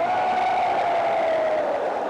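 Ringside Muay Thai music: the pi (Thai oboe) holds one long note that slides slowly down in pitch, over crowd noise.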